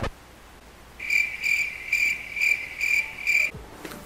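Cricket chirping, six chirps at about two a second, starting about a second in and cutting off abruptly. It is a cricket sound effect of the kind edited in over an awkward silence.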